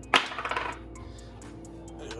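A single sharp clink of hard kitchen items knocking together just after the start, ringing briefly, over soft background music.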